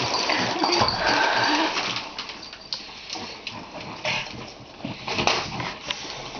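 Pug puppies whining and squealing in short pitched cries, most of them in the first two seconds, followed by a few light taps and knocks.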